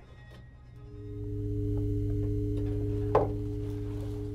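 Suspense film score: a low sustained drone with steady higher tones swells in about a second in and holds. A single sharp knock comes about three seconds in.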